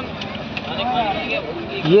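Faint plastic clicks as an automotive relay is pressed into its socket in a Tata Nano fuse box, over steady background noise, with a brief murmured voice about a second in. The relay itself gives no switching click, which the mechanic takes for a faulty main relay.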